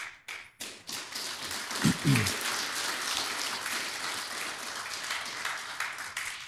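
Audience applause: a few scattered claps that quickly fill in to steady clapping from a crowd, with one voice calling out in cheer about two seconds in, tapering off near the end.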